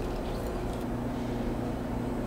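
Steady low hum of kitchen room tone, with no distinct handling sounds standing out.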